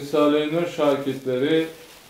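A young man's voice reading a Turkish text aloud, ending shortly before the end.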